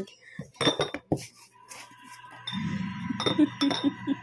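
Glass bottles clinking against each other as they are handled in a cardboard box, with a few sharp clinks in the first second or so. Then comes a rustling handling noise as one bottle is lifted out.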